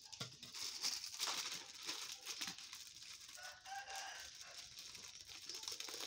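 Thin plastic bag crinkling as food is scooped into it with a ladle, with small clicks of handling. A chicken calls faintly in the background about three and a half seconds in.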